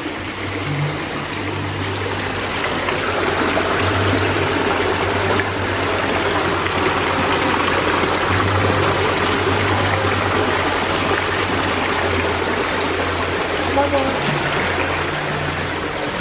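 Small waterfall splashing over rocks into an aquarium tank: a steady rush of falling water that grows louder over the first few seconds as the microphone nears the cascade, then holds.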